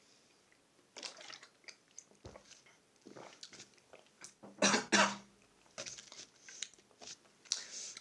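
A person drinking juice straight from a carton: gulping and breathing sounds, a dull thud a little over two seconds in as the carton is set down, then two loud coughs about halfway through.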